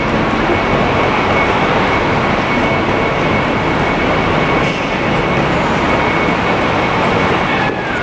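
Steady traffic and idling-vehicle noise in a covered airport pickup roadway under a concrete deck, with a faint constant high tone running through it.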